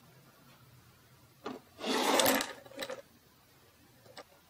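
Several clear plastic fountain pens gathered up and slid across a wooden tabletop: a light knock about one and a half seconds in, then a half-second rubbing scrape, then a single click.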